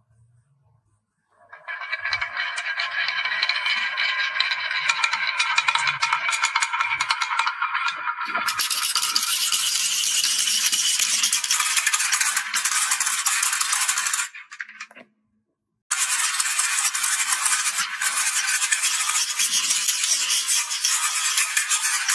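Many small balls rolling and clattering down a wooden HABA marble-run track, a dense, continuous rattle of clicks. It starts about a second and a half in, and stops for about a second and a half just past the middle before resuming.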